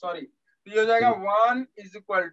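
Speech only: a man talking in short phrases with brief pauses.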